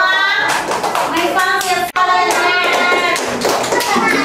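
Voices singing together over steady hand clapping. The sound drops out for an instant just before the middle, then the singing and clapping carry on.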